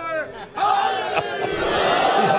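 A man's amplified voice ends a phrase, then about half a second in a crowd of men bursts into loud shouting together, many voices at once, as a collective response to him.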